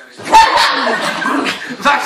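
A small dog yapping excitedly as it jumps up onto a sofa, mixed with people's loud exclamations and laughter.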